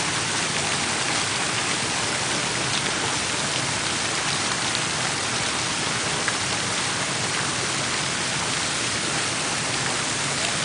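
Park fountain water jets splashing steadily into the basin, a constant even rush of falling water.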